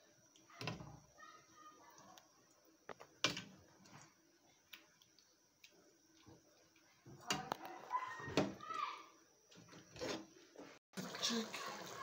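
A ladle knocking and scraping against an aluminium cooking pot while thick soup is stirred: scattered light clinks and knocks, a cluster of them a little past the middle.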